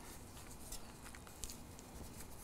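Quiet handling noise: a few soft, scattered ticks and rustles from a flour tortilla loaded with filling being folded by hand on a griddle top.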